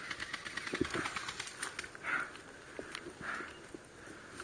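Airsoft gunfire: a rapid burst of sharp, evenly spaced clicks lasting about two seconds, followed by a few soft rustling sounds about a second apart.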